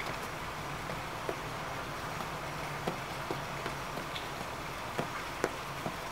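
Steady outdoor background noise with a few soft, irregular taps of rubber-soled sneakers stepping on wet stone paving, about half a dozen, most of them in the second half.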